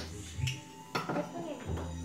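A few sharp clinks and knocks, about half a second and a second in, over a low steady hum.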